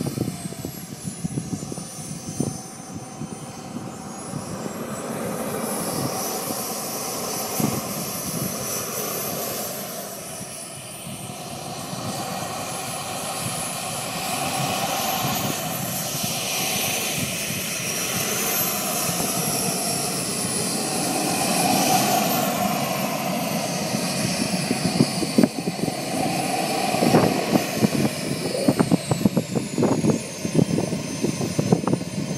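Radio-controlled model jet's small turbine engine whining at taxi power, its high pitch rising and falling again and again with the throttle, and growing louder as the jet nears.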